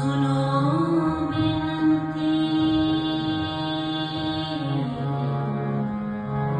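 Sikh shabad kirtan: a woman sings a devotional hymn over steady harmonium chords. Her voice rises near the start and holds one long note for about four seconds before falling back.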